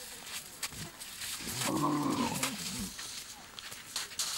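A dromedary camel calling once: a long, low call of just over a second that starts about a second and a half in, over a noisy background with scattered clicks.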